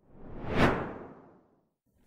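A whoosh sound effect that swells to a peak about half a second in and fades away by about a second and a half, marking the edit from the conversation to the outro.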